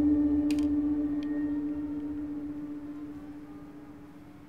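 Suspense film-score drone: one steady held tone with overtones, slowly fading away. Two light clicks fall about half a second and just over a second in.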